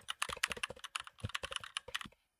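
Typing on a computer keyboard: a quick, irregular run of keystroke clicks as a word is typed.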